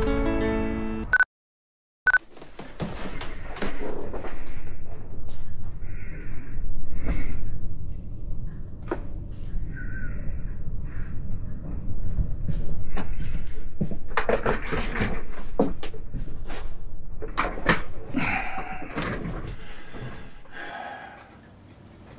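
A brief snatch of music that cuts off abruptly into a moment of dead silence, then a run of scattered knocks and thumps of someone moving about and handling things at a table, over a steady low rumble.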